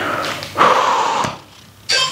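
A woman breathing hard through her mouth while working against a resistance band: one long rush of exhaled air about half a second in, then a short intake of breath near the end.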